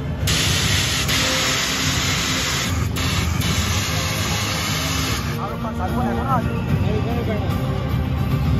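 Stage CO2 jet cannons firing vapour plumes upward with a loud, steady hiss, briefly broken about three seconds in, cutting off at about five seconds.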